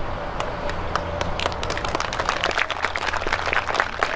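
A crowd clapping outdoors: scattered claps that thicken into steady applause after about a second, over a steady low hum.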